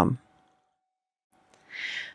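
Near silence, then a person drawing a short, audible breath about a second and a half in.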